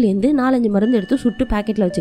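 Speech: one voice narrating in Tamil, with faint steady tones underneath from about halfway through.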